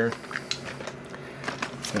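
Cardboard cigar boxes being handled and shifted on a wooden humidor shelf: a few light scrapes and taps.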